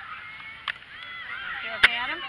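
Distant shouts and calls of players and spectators across an open field, with a sharp knock near the end.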